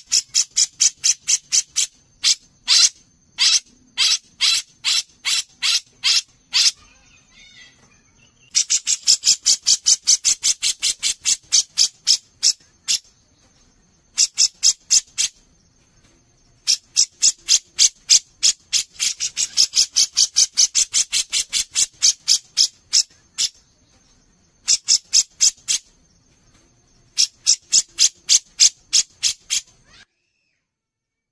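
Cucak jenggot (grey-cheeked bulbul) giving its rattling 'mbeset' song: long runs of rapid, sharp repeated notes, about five a second, in several bouts broken by short pauses.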